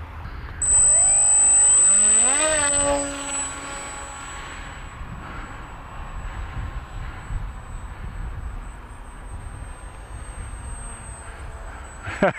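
Brushless electric motor and propeller of a foam RC plane running up to launch power: a high whine starts about half a second in and the propeller's buzz rises in pitch over the next two seconds. The sound then drops to a fainter steady drone as the plane climbs away.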